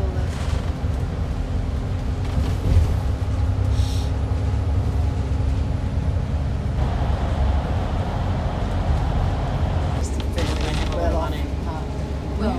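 Double-decker bus cruising on an expressway, heard from the upper deck: a steady low engine and road rumble with a constant hum, the road noise growing fuller a little past halfway. Indistinct voices come in near the end.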